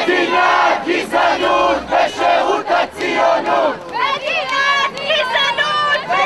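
A crowd of protesters shouting a chant in unison, many loud voices together with short breaks about once a second; the slogan is 'A state of racism in the name of Zionism!'.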